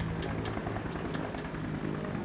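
Propeller aircraft engine running steadily at an even pitch.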